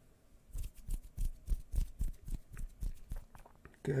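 Soft noises made by hand close to one side of the microphone as an ASMR trigger: a rapid, irregular run of small clicks and scratches lasting about three seconds.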